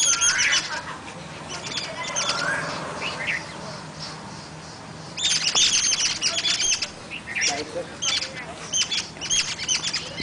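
Birds chirping in repeated bursts of short, high calls, the loudest run coming about five to seven seconds in.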